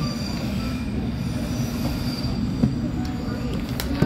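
London Underground train heard from inside the carriage: a steady rumble with a thin, high wheel squeal that fades a little over two seconds in, then a few sharp clicks near the end.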